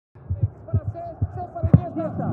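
A run of about seven low, irregularly spaced thuds, the loudest near the end, with faint voices behind them.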